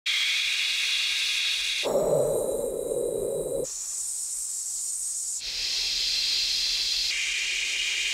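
Synthesized colour noise, a steady hiss that changes abruptly about every two seconds between pitch bands: a mid-high hiss, then a deeper rushing noise, then a very high hiss, then mid-high hiss again.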